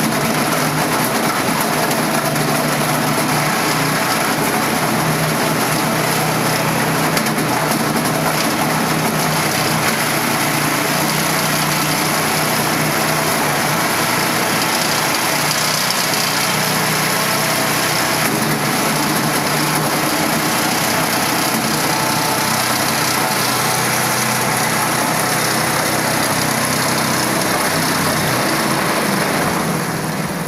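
Electric-motor-driven single-shaft waste shredder running steadily, a loud even hum and whirr with no breaks.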